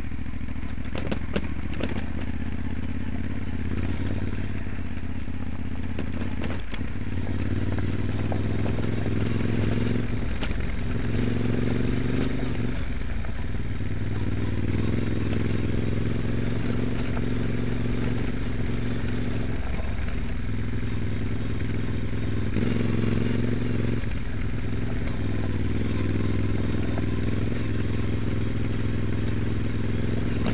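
Moto Guzzi Stelvio NTX's transverse V-twin engine running at a steady low pitch under way on a rough stony track. Its note dips and comes back several times as the throttle is eased and opened again. A few sharp clicks and knocks from the bike going over stones come in the first few seconds.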